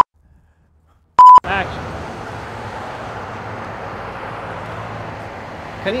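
A short, loud electronic beep of one steady pitch about a second in, after a moment of dead silence, as an edit bleep between outtakes. It is followed by steady outdoor background noise with a low hum.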